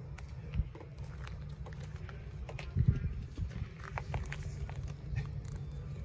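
A cat clambering about inside stacked black plastic crates, making scattered knocks and scrapes on the plastic, with one louder thump nearly three seconds in. A low steady rumble runs underneath.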